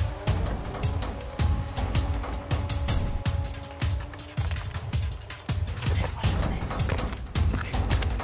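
Background music with a heavy, steady bass beat and fast hi-hat ticks.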